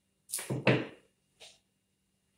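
Quick rustling swishes of a flower stem being handled and pushed into floral foam: two close together early in the first second, then a fainter one about a second and a half in.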